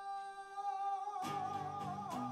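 A male singer holds one long sung note into a microphone. About a second in, acoustic guitar strumming comes in under it, and the note takes on a wavering vibrato.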